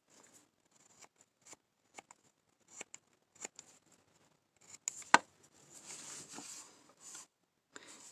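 Carving knife taking short slicing cuts in a basswood block: a string of brief, separate cuts, then a sharper click about five seconds in and a couple of seconds of steadier scraping.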